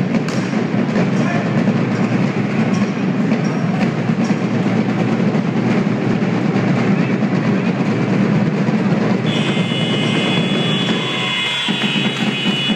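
Loud crowd noise in an indoor sports hall, carried by a steady rhythmic beat. About nine seconds in, a long, high, shrill tone sets in and holds for about three seconds, as the match ends.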